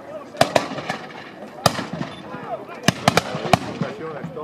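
Black-powder flintlock muskets firing blank charges in a ragged series of about eight sharp shots: a cluster of three near the start, one at about a second and a half in, and four more close together in the last second and a half.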